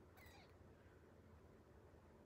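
Near silence: room tone with a low steady hum, and one faint, short sound a fraction of a second in.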